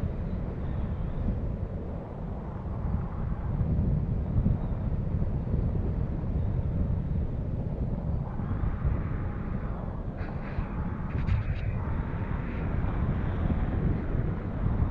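Wind from gliding flight buffeting an action camera's microphone: a steady low rumble, with a brighter rushing hiss and a few faint clicks in the second half.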